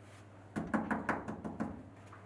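Knocking on a wooden door: a quick run of about eight knocks lasting a little over a second.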